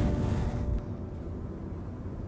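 A low, steady rumble with a brief hiss in the first half second, in a gap between passages of background music.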